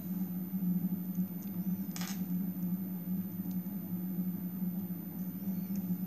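Faint small clicks and rustles of glass seed beads, pearls and a beading needle being handled and threaded, with one brief louder rustle about two seconds in, over a steady low electrical hum.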